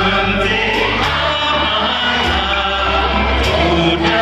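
A man singing a song live into a microphone over an instrumental backing track, amplified through a hall's PA speakers.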